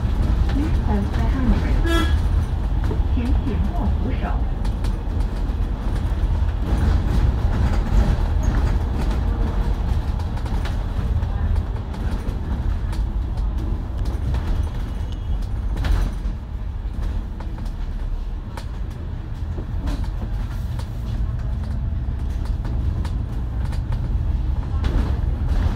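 Steady low rumble of a moving KMB double-decker bus heard from inside: its diesel engine and road noise under way. A short sharp sound comes about two seconds in and another around sixteen seconds.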